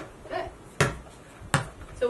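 A basketball bounce pass on concrete: three sharp slaps in about a second and a half as the ball is released, bounces once off the concrete and is caught in hands.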